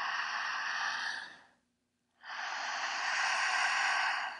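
A woman breathing strongly through her mouth: a long, audible inhale, a short pause, then a long, forceful exhale through the mouth, each lasting about two seconds.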